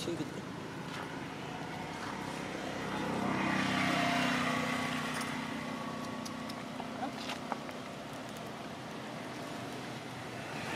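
A passing motor vehicle's engine, a steady drone that swells to its loudest about four seconds in and then fades away.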